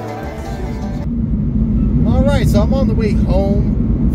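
Background music stops about a second in, giving way to the steady low rumble of road noise inside a moving car's cabin. A man's voice sounds briefly twice over the rumble, without clear words.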